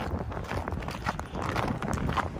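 Footsteps crunching on snow at a walking pace, with wind buffeting the microphone.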